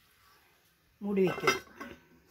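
A stainless-steel lid clinks onto a cooking pot about a second and a half in, with a person's voice starting just before it.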